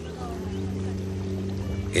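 Small boat motor running steadily, a low even hum.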